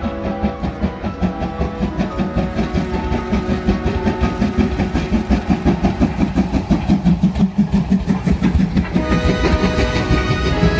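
Steam locomotive C11 325, a 2-6-4 tank engine, chuffing steadily as it passes close by. The exhaust beats come fast and even and grow louder as it draws level, then fade near the end as the coaches roll past. Background music plays throughout.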